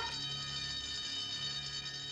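Background film music holding a soft, steady chord of several sustained tones.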